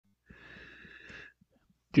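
A faint breath close to the microphone, lasting about a second, followed by a man starting to speak at the very end.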